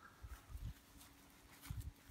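Faint footsteps on grass: a few soft, low thumps of a person walking, a couple in the first second and a quick cluster near the end.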